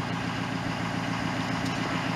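1963 Chevrolet C10's straight-six engine idling steadily.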